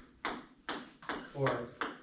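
Celluloid-plastic table tennis ball clicking sharply off paddle and table, about five hits at roughly half-second intervals.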